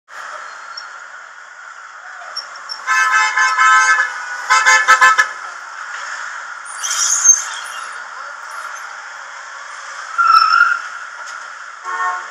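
Street traffic with car horns honking: one long honk about three seconds in, then a run of short toots, over a steady traffic hiss. A brief high squeal follows a couple of seconds later.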